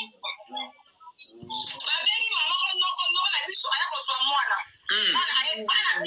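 A voice talking quickly and loudly, starting about a second and a half in, with a short break near the five-second mark.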